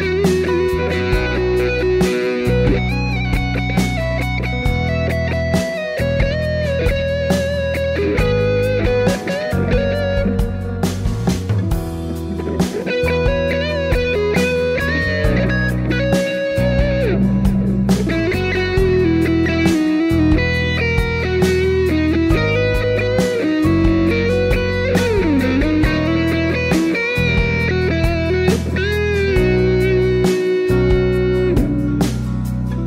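Electric guitar with distortion playing a lead melody with string bends over a backing track of bass and drums. The guitar is captured at once by a direct box and by a Shure SM57 on the cabinet, panned left and right into a stereo mix.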